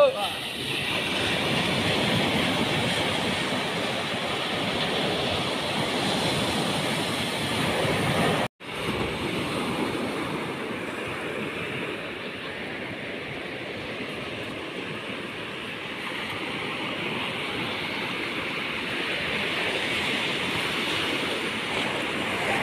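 Steady wash of small waves breaking on a sandy beach, with a brief cut to silence about eight and a half seconds in.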